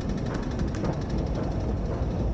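Steady low rumble of an underground metro station and the escalator running down, with a faint rapid ticking in the first second.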